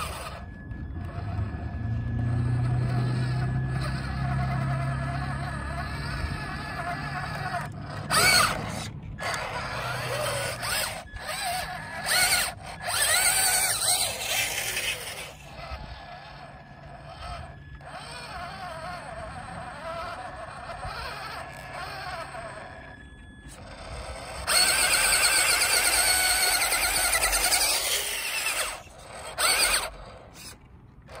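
Electric motor and gearbox of a Radio Shack 4X4 Off Roader RC truck whining as it drives over loose dirt. The pitch rises and falls with the throttle, in several louder bursts, the longest a few seconds before the end.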